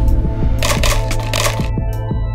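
Ice cubes dropping and clattering into a plastic cold cup, in two bursts of clatters about half a second apart, over background music.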